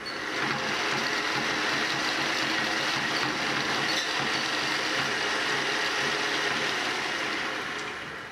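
Hand-cranked target retriever being wound, its wheel, pulley and cable running steadily for about seven seconds as the paper targets are brought in, then fading near the end.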